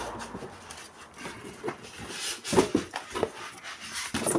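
Cardboard box being opened and its polystyrene foam packing handled: irregular scraping and rubbing of cardboard and foam, with a few sharper knocks, the loudest about two and a half seconds in.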